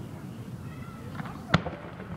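A single sharp firework bang about one and a half seconds in, over a low murmur and faint voices of the watching crowd.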